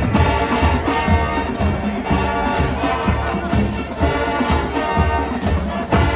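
High school marching band playing live: brass sustaining chords over drums and front-ensemble percussion, with a steady beat.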